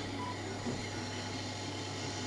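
Small electric gear motors of a radio-controlled six-legged walking toy robot whirring faintly as it walks, over a steady low electrical hum.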